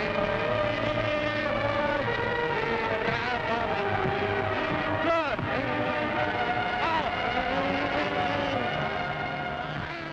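Orchestral music with held, sustained chords that shift slowly, and sliding pitches about five and seven seconds in.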